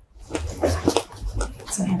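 Quiet voices: soft, broken speech at a low level, with louder talk starting just at the end.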